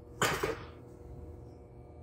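A short breath or throat sound from the man holding the camera about a quarter second in. After it comes a steady low hum with faint steady tones, the room tone of a steel ship's compartment.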